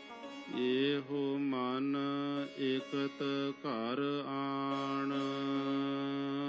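Devotional Indian music: a steady drone under a melodic line that slides up and down in pitch, breaking up briefly around the middle and settling into a long held note near the end.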